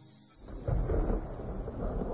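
Recorded thunder rumbling, a sound effect in the gap between songs of a music mashup. It starts about half a second in, after the previous song has faded out.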